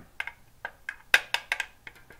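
Irregular sharp clicks and taps, about a dozen, from a homemade metal vacuum-cleaner-tube instrument and the brass cylinder fitted on it being handled; the loudest tap comes a little past halfway.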